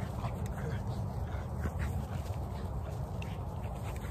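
An American Bully making short, noisy breathing and vocal sounds as it chases a flirt pole lure, over a constant low rumble.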